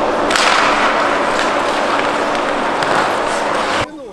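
On-ice sound of an ice hockey game: a steady hiss of skate blades on the ice with sharp knocks of sticks and puck, over a constant low hum. It cuts off abruptly just before the end.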